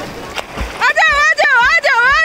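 Seawater washing and splashing around waders, then from about a second in a loud, high-pitched voice calls out with a wavering, rising and falling pitch over the splashing.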